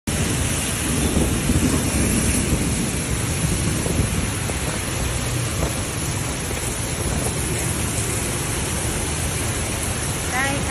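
Heavy rain pouring steadily, with a deeper rumble in the first couple of seconds.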